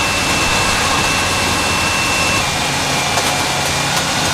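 Steady, loud machinery noise from grain-handling equipment, with a thin high whine that drops slightly in pitch a little past halfway.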